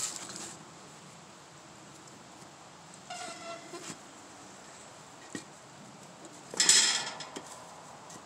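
A log being handled on the steel bed of a manual hydraulic log splitter. There is a brief squeaky scrape about three seconds in and a light knock a couple of seconds later. A louder scrape of wood on metal comes near the end, with quiet between.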